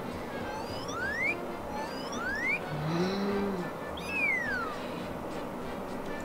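Edited-in cartoon-style sound effects over a faint background. Two whistles slide upward, a short low tone rises and falls in the middle, then a whistle slides downward.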